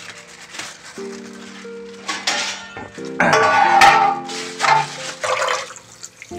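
Kitchen tap water running in three short gushes as raw chicken is rinsed under it in the sink, the gushes the loudest sound. Background music with long held notes plays underneath.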